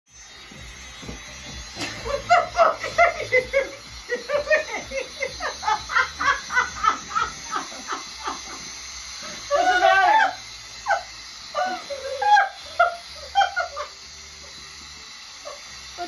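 Women laughing hard in quick runs of bursts, with a longer, higher peal of laughter about ten seconds in and a few shorter laughs after it.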